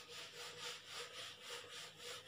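Handheld whiteboard eraser rubbing back and forth across the board, wiping off marker writing in repeated strokes, about three a second.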